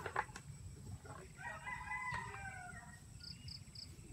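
A rooster crowing once, one call of about a second and a half in the middle. A sharp knock comes just at the start.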